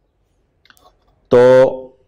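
A few faint taps and clicks of a stylus on a pen tablet in a quiet room, then a man's voice says one short word past the middle.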